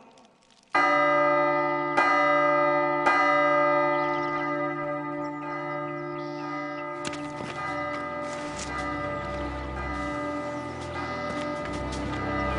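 A large bell tolling: struck about a second in and twice more a second apart, each stroke ringing on in a long, steady hum of many tones, with further strokes from about the seventh second.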